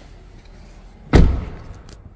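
A door of a 2024 Smart #3 being shut: one solid slam about a second in, dying away over about half a second.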